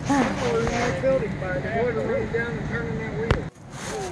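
A woman's voice making wordless, drawn-out sounds over steady low rumbling noise and rubbing from the camera being handled. A sharp knock comes a little past three seconds in, followed by a brief drop-out.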